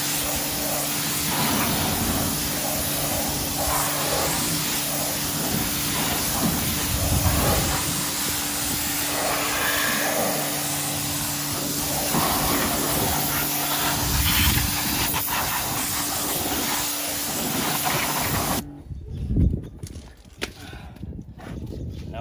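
Pressure washer lance spraying water onto a car wheel and tyre: a steady hiss of spray with the machine's steady hum underneath, cutting off suddenly about three seconds before the end.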